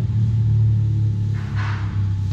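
A steady low hum, with a short soft hiss near the end.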